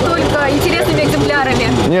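Mainly speech: people talking, with a short answer near the end, over a steady low background hum.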